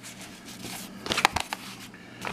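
Fabric tool bag being handled: rustling and soft clicks as its flap is folded down over the back pocket, with a short cluster of sharper knocks a little past the middle.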